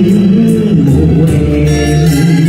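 Loud live stage music with guitar to the fore and a bass line under it, an instrumental passage between sung lines.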